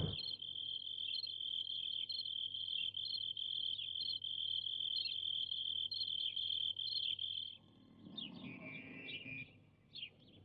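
Crickets chirping: a steady high trill with short chirps recurring about once a second over it, cutting off about seven and a half seconds in, followed by a few faint scattered chirps.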